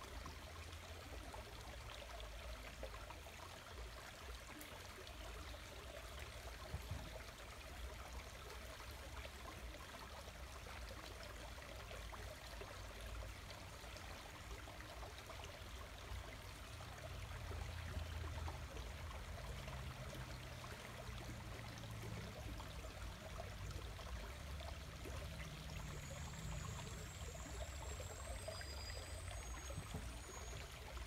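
A small rocky creek trickling faintly and steadily.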